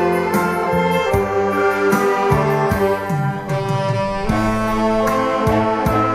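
Saxophone ensemble of baritone, tenor and alto saxophones playing a melody in parts over a steady drum beat.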